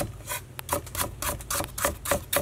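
Cleaver chopping through a root onto a wooden chopping block, a run of uneven knocks about four a second.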